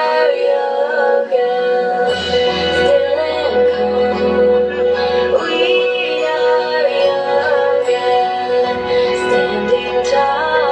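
A pop song playing, with a sung melody over instrumental backing. A low bass part comes in about two seconds in, drops out in the middle and returns near the end.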